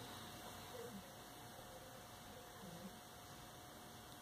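Near silence: room tone with a faint steady hiss and a faint hum.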